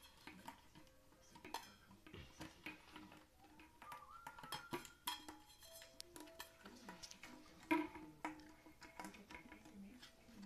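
Stainless-steel dog bowl clattering and scraping on a tile floor as a puppy shoves it with its nose and mouth, with many small knocks and a loud clank a little under eight seconds in.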